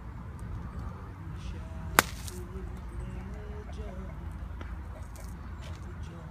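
One sharp crack about two seconds in as a golf club strikes a target bird golf ball off a tee mat, over a steady low rumble.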